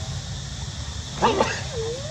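Infant long-tailed macaque crying: a sharp burst of high calls about a second in, then a drawn-out whimpering call that rises and falls in pitch.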